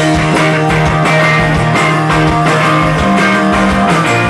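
A live indie rock band playing: electric guitars strumming over bass and a steady drum beat. The bass note steps up about three seconds in.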